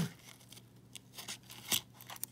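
A few faint clicks of nickels knocking together as fingers slide coins along a stack in an opened paper coin roll, with light handling of the paper wrapper; the loudest click comes near the end.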